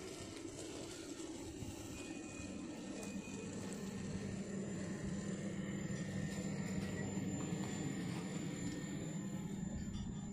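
Double-deck passenger carriages of a VR night train rolling slowly past at a platform as the train pulls in. The wheels give a low steady rumble that grows gradually louder, with a steady hum and a thin high whine over it, and a faint brief squeal about two seconds in.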